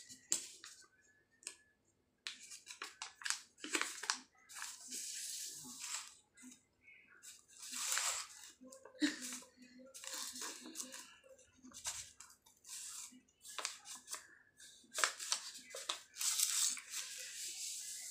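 An A4 sheet of paper being folded and creased by hand on a hard floor: rustles and scrapes on and off as the paper slides, bends and the fold is pressed flat.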